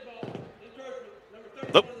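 Speech: a man's voice calling a penalty, with the word "defense" near the end, over faint open-air stadium ambience.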